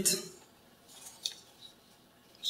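Faint scraping and a couple of light clicks as a tablet's folding folio case is handled, about a second in.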